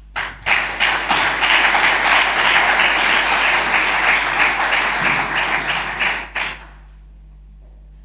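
Audience applauding after a speech, many hands clapping at once. The applause starts just after the opening, holds steady and dies away about six and a half seconds in.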